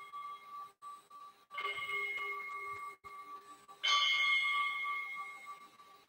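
Altar bell struck twice, about two seconds apart, each stroke giving a clear ringing tone that slowly dies away, with the second stroke the louder; rung as the consecrated host is raised at the elevation.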